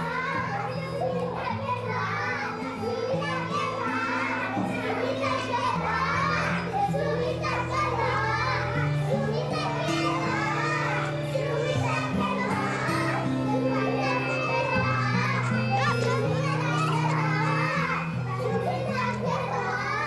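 Children playing: young girls' voices calling and chattering as they run about, over background music of long held low notes that change pitch every second or two.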